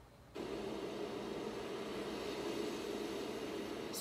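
Amazon Echo Spot's built-in speaker starting to play a streamed Amazon Prime video's soundtrack: a steady, noisy drone that comes in suddenly about half a second in.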